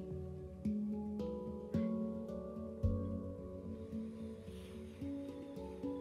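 Soft, slow instrumental background music: held low tones with gently plucked notes that ring and fade, a new note about every second.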